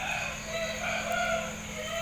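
A drawn-out animal call in the background: a few held, high pitched notes over about a second and a half, with crickets chirring steadily behind.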